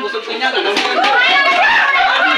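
Speech only: several people talking excitedly, in high-pitched voices.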